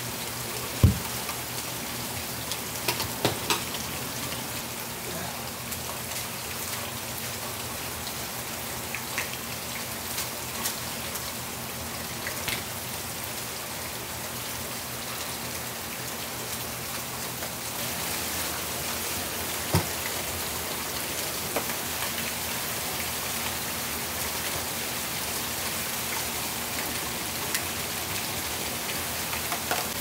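Steady rain falling, an even hiss with scattered louder drops and taps, growing slightly heavier a little past halfway.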